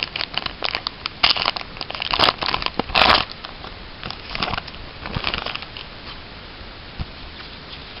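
Foil wrapper of a small Pokémon trading-card sampler pack being torn open and crinkled in the hands: dense crackling for about three seconds, loudest at the end of that run, then a few softer rustles.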